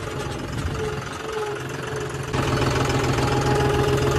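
John Deere tractor's diesel engine running, heard from the driver's seat, growing louder a little over two seconds in.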